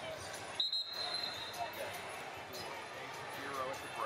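Busy wrestling-arena ambience, with voices calling out around the hall. About half a second in, a referee's whistle blows one steady high note for about a second.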